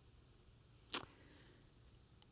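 A pause with faint room tone, broken once a little under a second in by a single short, sharp click.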